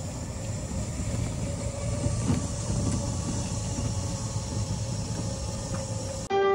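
Steady low rumble of a ride in a small open vehicle along a path, with a faint steady whine above it.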